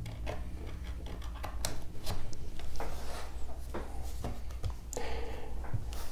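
Hands handling a cable and a laptop on a wooden desk: scattered small clicks, taps and rubbing as a USB plug is pushed into the laptop's port. A steady low hum runs underneath.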